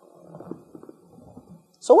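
A pause in speech filled with a faint, indistinct low murmur, then a woman starts speaking near the end.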